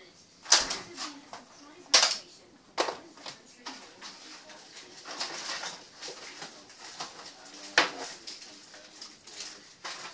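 Hard household objects being handled and set down, giving several sharp knocks and clatters with rustling in between. The loudest knocks come about half a second and two seconds in, and another comes near eight seconds.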